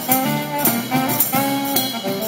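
Street band playing upbeat jazz live: a saxophone carrying the melody over strummed acoustic guitar and upright double bass, with steady percussion strokes keeping the beat.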